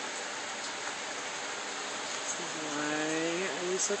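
Steady, even hiss with no rhythm or events in it. In the second half a woman's voice comes in with a long drawn-out 'so'.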